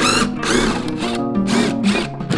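Cordless power driver running screws into pine boards, its motor whining up and down, under background guitar music.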